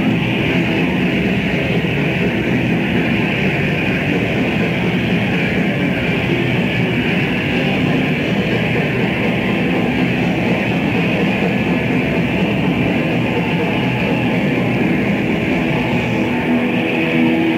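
Thrash metal band playing live, with distorted electric guitars, bass and drums in one continuous dense wall of sound. The audience recording is dull, with little treble.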